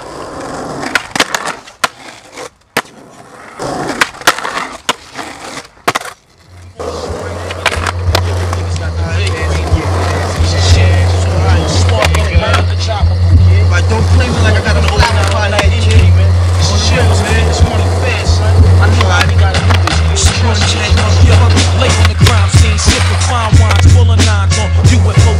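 Skateboard wheels rolling on pavement, with the board clacking on pops and landings and scraping on a ledge grind. About seven seconds in, a hip-hop track with a heavy, steady bass line comes in over the skating sounds.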